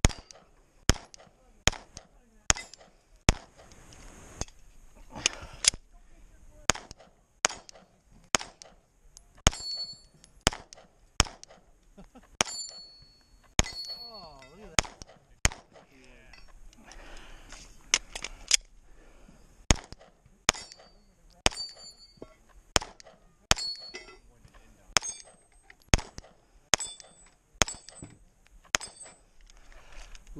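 Semi-automatic pistol fired in fast strings of shots, often two a second, many shots followed by the brief high ring of struck steel targets. A break of about three seconds midway comes while the pistol is reloaded.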